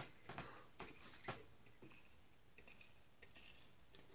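Faint handling sounds of things being moved about: a few soft clicks and knocks in the first second and a half, then fainter rustling.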